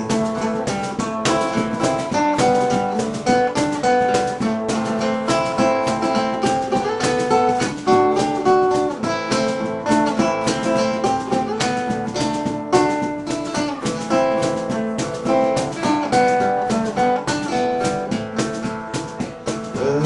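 Acoustic guitar strummed in a steady rhythm, chords ringing under the strokes, played as an instrumental break with no singing.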